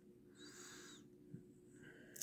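Near silence: room tone with a faint hum and a soft hiss lasting about half a second, shortly in.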